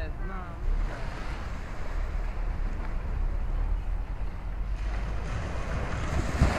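Wind buffeting the microphone with a steady low rumble, over the hiss of small waves washing onto a sandy beach. The surf or wind swells brighter about five seconds in.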